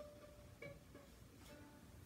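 Violin strings plucked softly, single faint plucks about every half second, taken as a starting pitch.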